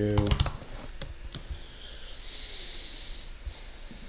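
Typing on a computer keyboard: a quick run of keystrokes at the start and a couple of single key taps about a second in, then faint room tone with a light hiss.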